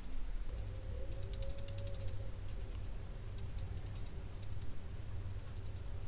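A paintbrush working watercolour paint, its bristles scratching in several short runs of quick, light ticks.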